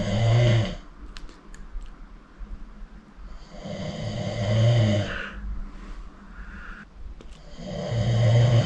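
A person snoring in a small room: three long snores, each about a second, coming roughly every three and a half to four seconds.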